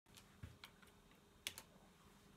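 Near silence with a few faint, short clicks and a soft knock scattered through it, the loudest about one and a half seconds in, over a faint steady hum.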